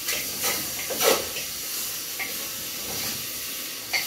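Seasoned meat sizzling steadily in a hot pan on a gas stove, with a few light knocks of the pan or a utensil in the first second or so.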